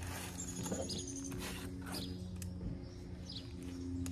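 Outdoor ambience: a steady low hum, with a few faint, short high chirps from birds.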